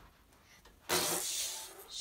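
A child's voice blowing a long hissing 'pshhh' that starts about a second in and fades away, imitating a whale spouting water from its blowhole.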